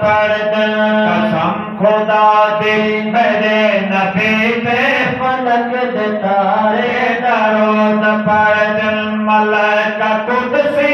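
Two men singing an Urdu naat into microphones through a loudspeaker. One voice carries the melody in long held, gliding notes, while the other holds a steady low hum beneath it.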